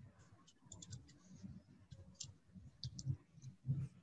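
Faint, irregular clicks of a computer keyboard and mouse, with a few dull low thumps, as a line of text is edited.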